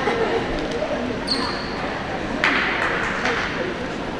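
Echoing voices of players and bench in a large sports hall, with a handball bouncing on the wooden floor. A brief high squeak comes about a second in, and a short rush of noise, the loudest moment, comes a little past halfway.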